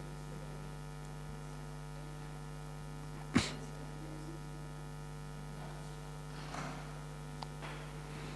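Steady electrical mains hum from the microphone and sound system, with one sharp knock about three and a half seconds in.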